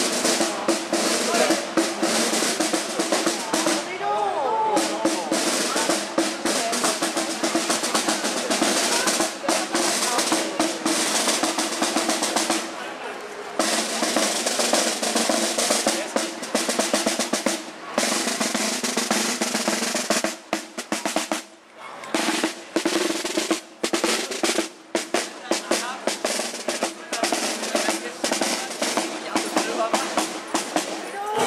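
Marching band drum section playing a march: rapid snare drum strokes and rolls over bass drum, with a couple of brief breaks.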